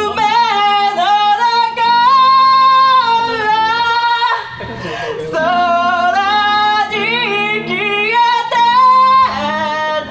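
Live rock band with a woman singing lead, holding long notes over electric guitar accompaniment; the music drops back briefly about four and a half seconds in before she sings on.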